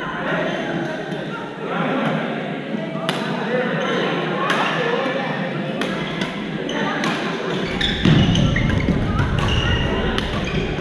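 Badminton rackets striking a shuttlecock in a rally, heard as a series of sharp clicks over shoes on the court floor and voices in the large gym hall, with a louder thump about eight seconds in.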